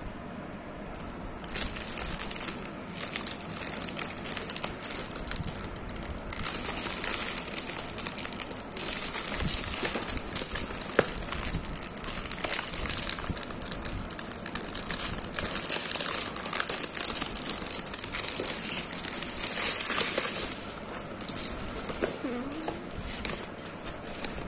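Plastic packaging wrap crinkling and rustling as it is handled and unwrapped, starting about a second and a half in and coming and going in loudness.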